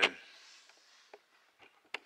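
Mostly quiet, with a few faint light clicks and one sharper click just before the end, after a spoken word cuts off at the very start.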